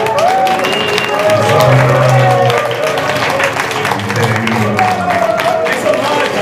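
Live improvised music with gliding, voice-like pitched lines, a low held tone that swells twice and many sharp percussive taps.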